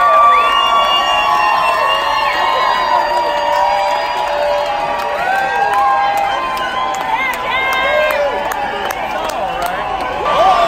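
Concert crowd cheering, with many voices whooping and shouting over one another in long, held calls.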